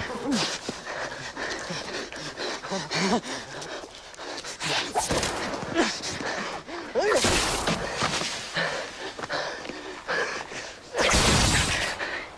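People running hard through forest, their feet crashing and snapping through dry undergrowth, with panting and shouting voices. Two loud rushing blasts cut in, one about seven seconds in and a longer one near the end.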